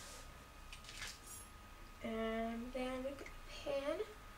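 A woman's voice singing a few held notes under her breath, the last one sliding upward, after a short soft noise about a second in.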